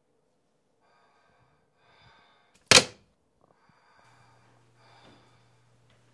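A single sudden, loud, sharp sound a little under three seconds in, dying away quickly, between fainter soft sounds. A faint low hum starts about a second later.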